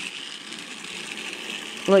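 Battery-powered toy Thomas engine running along plastic track: a steady whir of its small motor and gears.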